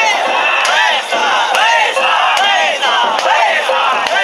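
Many danjiri pullers shouting a rhythmic call together as they run the float, about two shouts a second.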